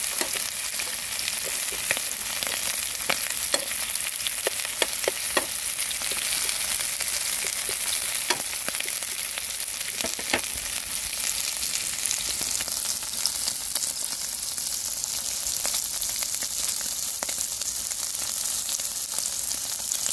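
Green onion and sliced meat sizzling in a frying pan, a steady hiss with sharp pops and clicks scattered through roughly the first half.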